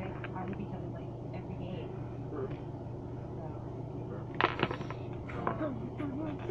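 Hard plastic action figures clicking and knocking against each other and a wooden tabletop as they are handled. A quick cluster of knocks comes about four and a half seconds in, with a few lighter clicks just after, over a steady low hum.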